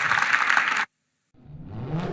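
Audience applause that cuts off abruptly just under a second in. After a brief silence a musical logo sting begins with a low rising tone.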